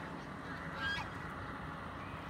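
A domestic goose honks once, a short call about a second in.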